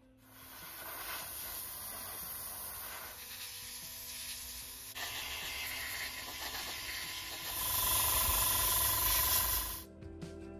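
Airbrush spraying paint: a steady hiss that gets louder about halfway through and again near the end, then cuts off suddenly.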